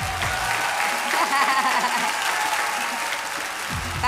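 Studio audience applauding steadily, with faint voices over the clapping.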